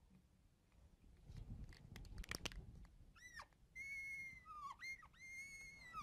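Faint squeaking of a marker drawn across a glass lightboard while a box is drawn around a result: a few quiet ticks, then from about halfway on high squeals that glide down, hold steady and dip in pitch.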